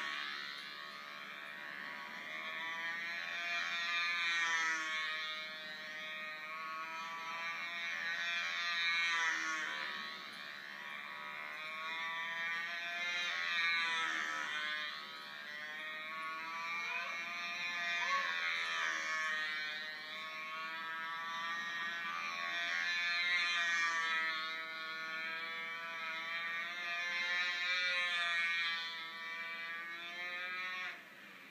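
Fox .35 two-stroke glow engine of a control-line stunt model plane running flat out in flight, a buzzing tone that wavers in pitch and swells about every four to five seconds as the plane laps the circle. Heard played back through a TV speaker.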